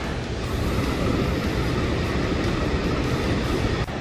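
Steady rushing noise of a mountain river's white-water rapids.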